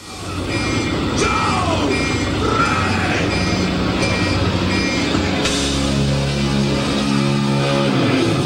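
Live heavy metal band playing, from a concert recording, coming in loud within the first half second; from about five and a half seconds a low held chord dominates.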